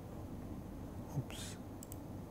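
Quiet room tone with a short breathy, half-whispered sound from a man about one and a half seconds in, and a couple of faint clicks.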